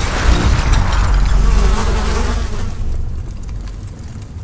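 Designed film sound effect of a blast scattering glass shards: a dense buzzing rush over a deep rumble that fades away after about three seconds.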